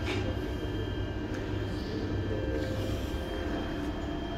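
Red Deutsche Bahn electric regional train running at the platform: a steady low hum with faint, steady electrical tones over it.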